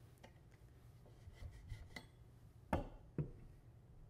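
Quiet handling of an alto saxophone as it is taken apart: faint rustles and light ticks, then two sharper clicks about half a second apart near the end as metal parts are set down on the table.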